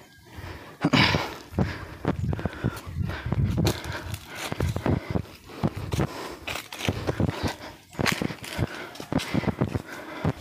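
Footsteps of people walking on a dry dirt footpath, an uneven run of short crunching steps with the rustle of dry grass and brush.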